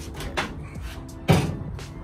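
Two clunks from a 1998 Toyota Tacoma's tailgate and its new latch as it is worked, the louder one about a second and a quarter in, over background music.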